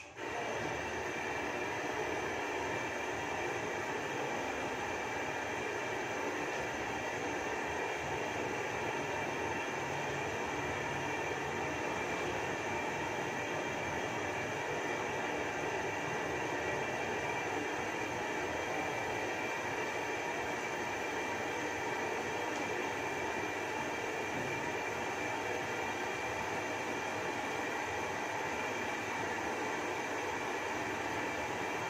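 Gas stove burner under a wok, running with a steady, even roar that comes up right at the start and holds unchanged.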